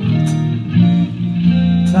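Amplified electric guitar playing held chords, a new chord struck about every three-quarters of a second.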